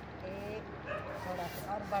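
A dog barking in several short yips.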